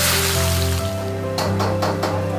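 Background music with sustained notes, over the sizzle of stuffed buns frying in hot oil, loudest in the first second.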